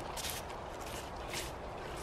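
Faint rustling as soil is knocked off the roots of a freshly pulled onion, over a steady low outdoor background noise.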